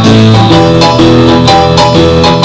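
Live band playing a blues-rock song: keyboard and guitar over drums with a steady beat. A deeper bass part fills out the low end about half a second in.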